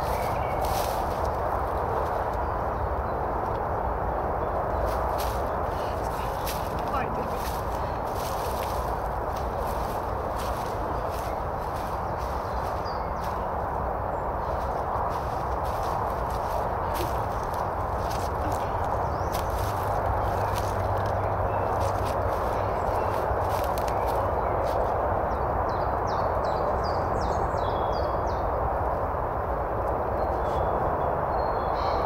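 Footsteps crunching and rustling through dry leaf litter, with repeated short crackles, over a steady rushing background noise.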